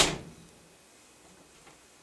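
A Cardinal Craftsman framed glass swing shower door shutting against its frame: one sharp clack right at the start that dies away within about half a second.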